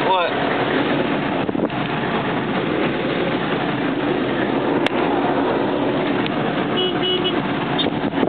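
Street traffic at a busy intersection: a steady wash of engine and tyre noise with horns tooting, including a few short high beeps a little before the end.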